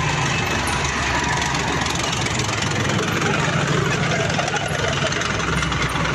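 Tracked armoured vehicle driving past at close range, its engine running steadily with a dense rattle over it.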